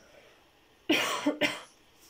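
A person coughing twice in quick succession about a second in, against a quiet room.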